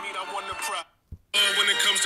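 A rap song plays at full volume through smartphone loudspeakers. It comes first from the Nubia Z60 Ultra, whose speaker the owner finds more muffled. About a second in it cuts out for half a second with a light tap, then resumes noticeably louder as playback switches to the Galaxy S24 Ultra.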